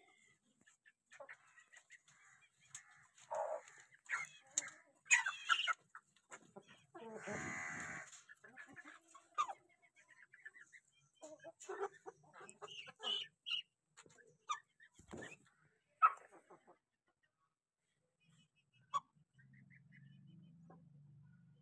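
Aseel chickens clucking and calling in short, scattered bursts, with one longer, louder call about seven seconds in.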